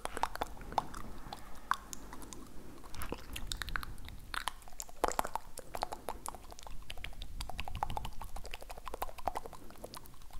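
Close-up wet mouth clicks and smacks in a fast, uneven run.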